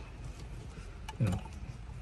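Faint handling noise of hands working a dashcam power cable into a car's headliner trim, over a low, steady background rumble. A man says a brief "you know" partway through.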